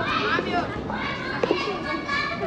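Children's voices: young novice monks calling out and chattering, high-pitched and overlapping.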